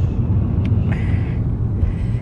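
Steady low rumble of a moving car heard from inside the cabin, engine and road noise together.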